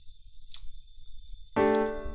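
A few faint clicks, then about one and a half seconds in a MuseScore piano playback chord sounds and rings on, fading slowly: one of the light-cadence chords drawn from the 2772 scale.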